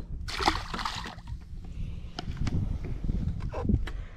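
A largemouth bass tossed back into the lake, hitting the water with a short splash about half a second in.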